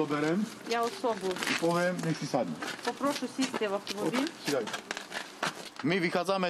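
People talking, with continuous speech throughout and no other clear sound standing out.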